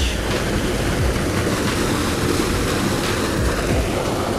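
Fast water pouring out of a corrugated metal culvert and churning white into the spillway pool below, a steady rushing noise with no let-up: the spillway is flowing hard.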